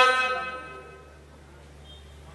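A man's voice chanting Quran recitation (qirat) holds the last long melodic note of a phrase, which fades out within about the first second. A pause follows with only a faint low hum.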